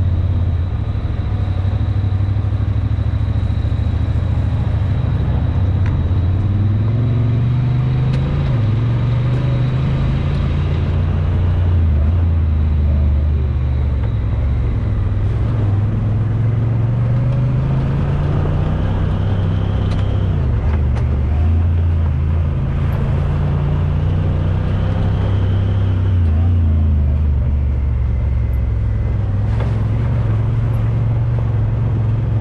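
Honda Talon side-by-side's parallel-twin engine running under varying throttle, its pitch rising and falling repeatedly, over the noise of tyres on a gravel trail.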